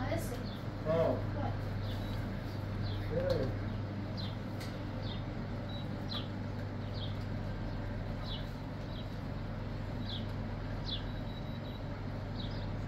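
A small bird chirping over and over, short high falling chirps about once a second, over a steady low hum.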